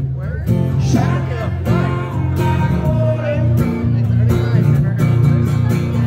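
A man singing into a microphone while strumming an acoustic guitar in a live solo performance.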